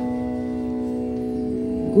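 Steady organ-like drone of several held notes sounding together, unchanging, in a pause between sung verses of a Sanskrit hymn.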